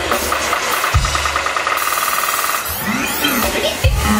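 Live electronic funk music in a breakdown: the deep bass drops out while a fast, stuttering synth buzz repeats, then sweeping synth glides lead back in, and the heavy bass returns at the very end.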